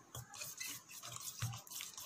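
Spoon stirring a thick ground paste into liquid in a steel container: faint, irregular scraping and wet squelching, with a couple of soft knocks of the spoon against the container.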